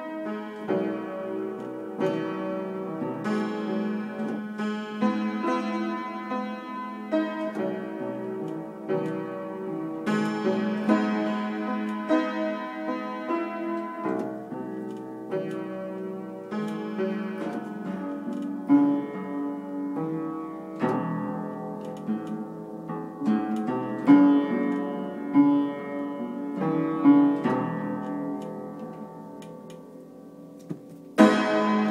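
Upright piano being played: chords and melody notes struck and left to ring, with harder-struck accents in the second half and softer playing near the end.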